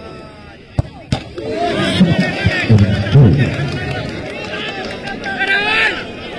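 A football kicked from the penalty spot, a sharp knock about a second in with a second knock just after, then a crowd of spectators shouting and cheering.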